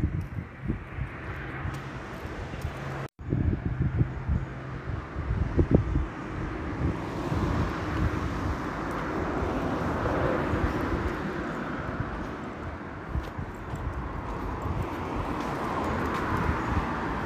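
Wind buffeting a phone microphone in irregular low gusts, cut off by a brief dropout about three seconds in. From about six seconds on, a steadier wash of street traffic noise takes over.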